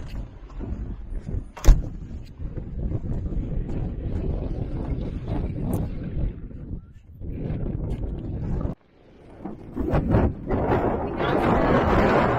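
Wind buffeting the microphone in gusts, with one sharp bang about two seconds in as the door shuts. The rumble drops out for a moment near nine seconds, then swells again near the end.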